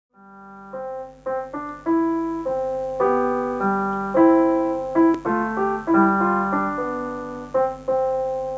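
Piano played with both hands: a slow, calm piece of single notes and chords, each struck and left to ring and die away, fading in at the start.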